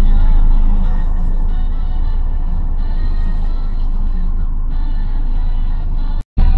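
Music playing inside a moving car, over the steady low rumble of the car's engine and tyres on the road.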